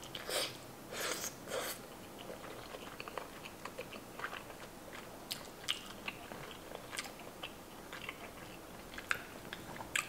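Close-miked mouth sounds of chewing a mouthful of green-lipped mussel and rice, wet smacks and clicks. The louder chews come in the first two seconds, then fainter scattered clicks.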